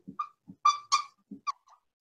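Marker squeaking on a whiteboard in a run of short writing strokes: about half a dozen brief, high squeaks in the first second and a half.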